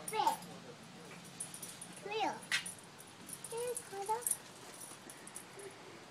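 Three short high-pitched vocal sounds about two seconds apart, the middle one a falling squeal.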